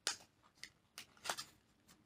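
A small paperboard gift box being handled and closed by hand: a few short, faint papery clicks and rustles.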